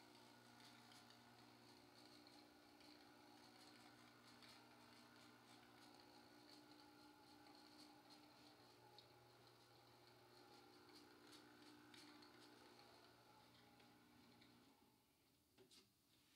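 Near silence: a faint steady low hum with light hiss, which cuts out about a second before the end.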